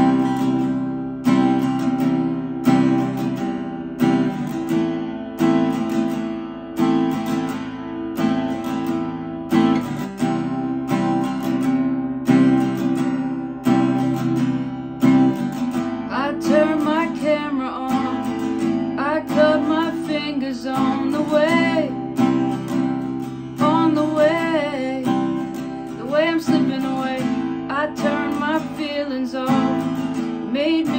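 Acoustic guitar strummed in a steady rhythm. A woman's voice starts singing over it about halfway in.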